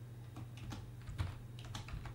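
Computer keyboard typing: scattered, irregular key clicks over a steady low hum.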